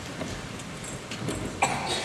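Hushed concert-hall ambience before the music starts, with a cough from the audience about one and a half seconds in.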